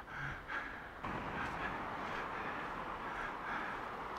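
Steady sea surf: the incoming tide's waves washing onto a sandy beach, an even rushing wash that sets in about a second in.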